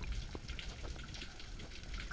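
Underwater ambience heard through an action camera's waterproof housing during a freedive in a kelp forest: a steady low rumble of moving water with faint, scattered crackling clicks.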